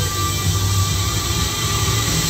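Fairground ride music playing over a steady low rumble from the spinning kiddie ride.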